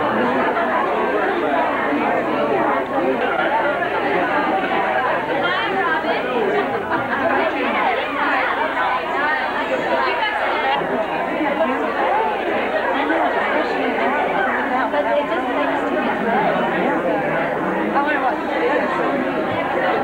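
Crowd of people all talking at once, a steady babble of many overlapping voices with no single voice standing out.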